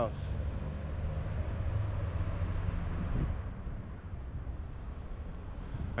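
City street traffic: a steady low rumble of cars moving through the intersection, easing off a little about halfway through.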